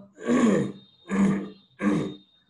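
A man's voice making three short, harsh, wordless vocal sounds about half a second apart. A faint steady high whine runs underneath.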